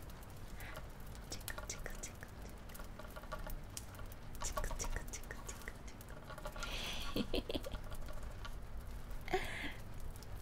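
Close-up, irregular crackling and scratching of a peacock feather brushed over the microphone in a tickling motion, with a couple of short breathy sounds near the end.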